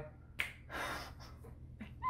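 A brief quiet break in the singing: one sharp click about half a second in, then a soft breathy exhale and a faint click near the end.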